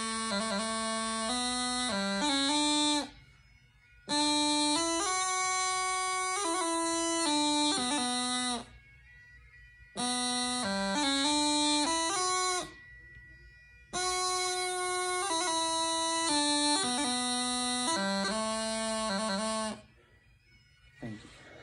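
Highland bagpipe practice chanter playing a pipe tune with quick grace-note ornaments, in four phrases with short pauses between them.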